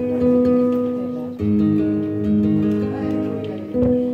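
Flamenco guitar playing solo, held chords ringing out with freshly struck chords about a second and a half in and again near the end.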